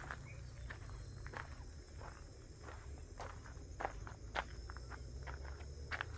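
Footsteps on dry ground and vegetation, an uneven step or crackle every half-second to second, over a low steady rumble. Faint steady high insect trilling sits underneath.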